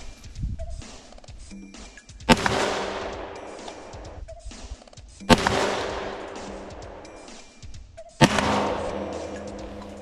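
Three single shots from a .223 semi-automatic rifle, about three seconds apart. Each is a sharp crack followed by a long echo that fades away.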